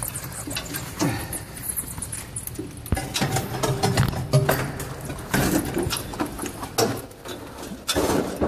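Rustling and scraping of a phone microphone being handled and rubbed against a jacket, with irregular clicks and knocks throughout.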